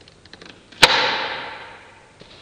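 A stretched rubber balloon snapping once with a sharp crack a little under a second in, its sound fading away over about a second, after a few faint ticks of the rubber under tension.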